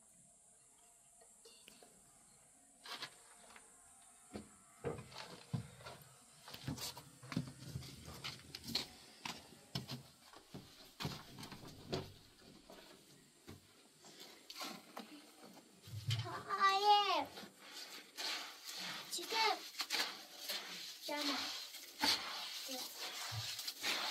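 Hand masonry work: scattered knocks and taps, turning toward the end to scraping and squelching of wet mortar being worked by hand in a metal basin. About two-thirds of the way in, a short high-pitched voice call rings out once.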